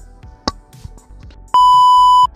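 Background music with a light beat and a sharp click about half a second in. Then, about a second and a half in, a loud steady high beep like a TV test tone: a glitch-transition sound effect.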